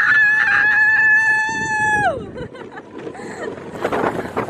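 A roller-coaster rider screaming: one long scream that swoops up, holds steady for about two seconds, then falls away, followed by quieter ride noise.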